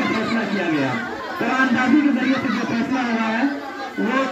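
Hubbub of many voices talking over one another: a seated crowd of children and men chattering among themselves. It eases off briefly near the end.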